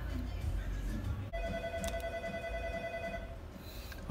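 A steady electronic tone lasting about two seconds, with a couple of short clicks partway through, over a low background hum.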